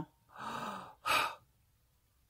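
A woman's breathy sigh, followed about a second in by a short, sharper breath.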